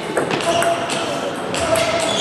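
Table tennis rally: a ping-pong ball clicks sharply off bats and the table several times, with short sneaker squeaks on the hall floor, in a large echoing sports hall.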